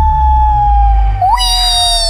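Cartoon-style whistle sound effect for an object flying through the air: one long tone sliding slowly down in pitch, joined about a second and a half in by a brighter whistle that swoops up and then slides down. A low rumble runs underneath.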